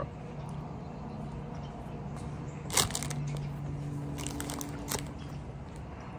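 A steady low hum runs throughout, broken by a sharp click about three seconds in and a few more crackles and clicks about a second later, from a pastry and a foam coffee cup being handled.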